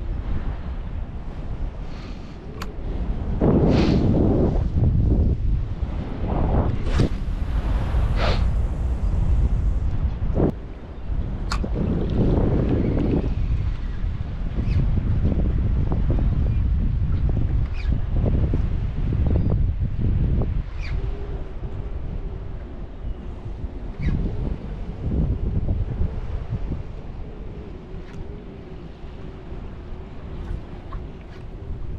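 Gusting wind buffeting the microphone, a low rumble that swells and eases every few seconds, with a few light clicks now and then.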